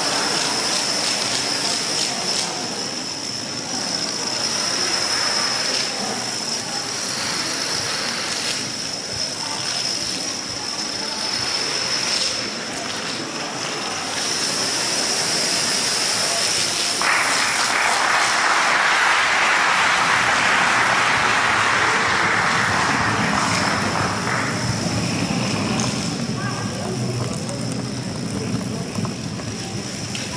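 Masses of plastic dominoes toppling in chain reactions, a continuous rattling clatter, denser and louder for about seven seconds from just past the middle.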